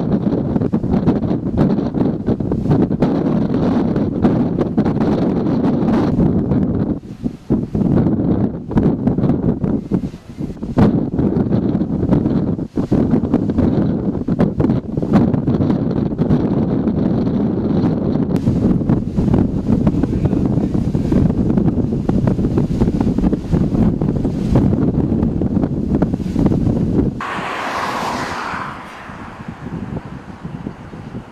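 Strong wind buffeting the microphone in loud, gusty rumbles, with brief lulls. About three seconds before the end it drops to a quieter, hissier sound.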